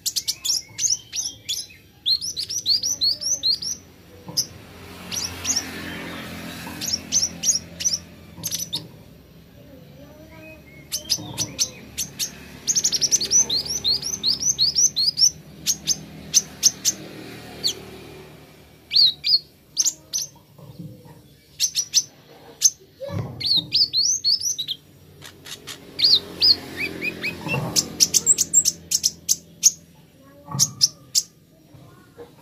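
Male Van Hasselt's sunbird (kolibri ninja) singing: repeated runs of quick, high, down-slurred chirps, several a second, broken up by sharp ticking calls.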